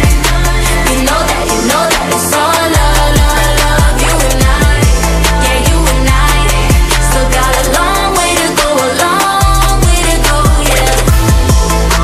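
Pop song by a female vocal group: the group sings the chorus over a steady beat and deep bass. The bass drops out briefly twice.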